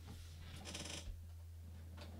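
Computer mouse being handled on a desk: a brief scraping slide followed by a single click, over a steady low hum.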